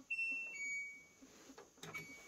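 LG Tromm front-load washer's electronic end-of-cycle signal: a short higher beep followed by a longer lower one, sounding as the display reads End and the cycle has run through. A couple of faint clicks come near the end.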